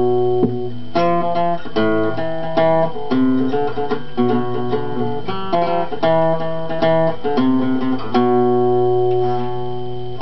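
Acoustic guitar strummed in chords, each strum left ringing into the next, at an unhurried, somewhat uneven pace.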